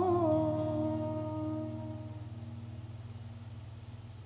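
A woman's last sung note ends in the first half-second, and the final strummed chord of an acoustic guitar rings on, fading away slowly at the close of the song.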